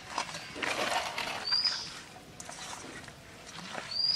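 A hand kneading and rubbing chili powder and salt into raw rui fish pieces in a steel bowl: wet squishing and rustling with small clicks, busiest in the first half. Two short high chirps, about two and a half seconds apart, sound over it.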